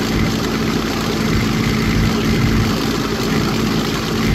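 Vehicle engine idling, a steady low hum with a constant droning tone, heard from inside the vehicle.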